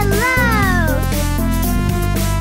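Electronic background music with a regular beat. Over it, near the start, a single meow-like animal call rises briefly and then falls away over about a second.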